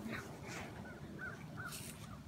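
Two short bird calls in woodland, with a brief rustle of leaves and branches near the end.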